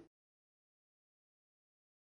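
Silence: the soundtrack has ended.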